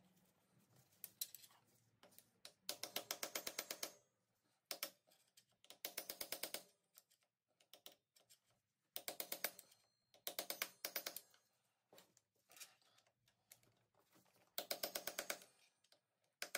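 Metal hand tool working the clutch hub nut and lock washer: short runs of quick, evenly spaced metal clicks, each lasting about a second, repeated several times with pauses between.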